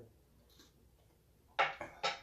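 A person tasting hot broth from a spoon: a quiet stretch, then a short, loud, breathy mouth sound about one and a half seconds in, like a slurp or a sharp breath.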